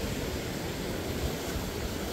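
Calm ocean surf washing steadily around shoreline rocks, with a low wind rumble on the microphone.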